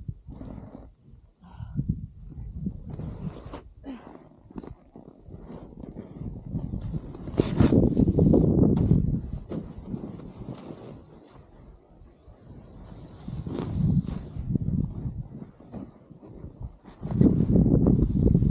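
Snowboard riding through deep powder snow: a rushing noise that swells in loud surges with the turns, loudest a little under halfway through and again near the end.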